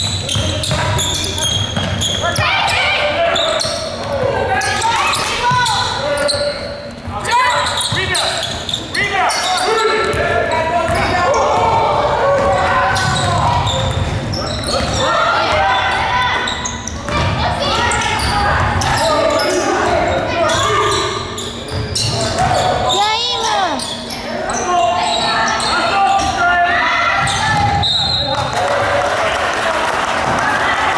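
Game sounds of a youth basketball game in a large gym: a basketball dribbling and bouncing on the hardwood court amid continuous indistinct voices and shouts from players and spectators.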